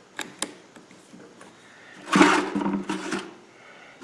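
Two small clicks as a new bit is fitted into a cordless drill's chuck, then the drill motor runs steadily for just over a second about halfway through.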